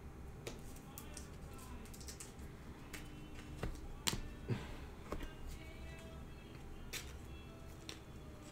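Scattered clicks and taps of trading cards and a clear plastic card holder being handled, over faint background music.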